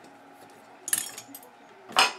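A few light metallic clinks about a second in, from a tiny Torx screw and the small sheet-metal bracket it holds being worked loose with a precision screwdriver.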